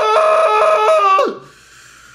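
A man's exaggerated, high falsetto wail of fake crying. It is held loud and wavers between two pitches, then slides down and breaks off about a second and a half in.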